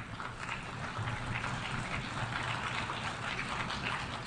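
Audience applauding, a steady patter of many hands clapping, while the speaker waits to go on.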